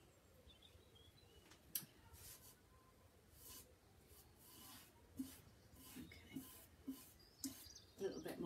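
Near silence with faint soft swishes of a brush spreading decoupage medium over paper, one sharp click about two seconds in, and faint bird chirps.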